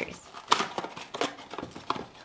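A few light clicks and taps with faint rustling: small plastic toy figures and their packaging being handled and set down on a tabletop.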